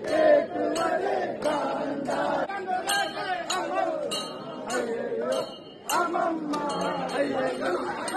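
Brass hand bells rung in repeated, regular strikes, each leaving a short high ring, over a crowd of voices shouting and chanting.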